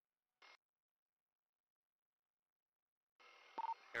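Mostly near silence on a police radio channel: a short burst of radio static just under half a second in, then near the end the radio hiss opens and a click and a short beep sound as a transmission keys up.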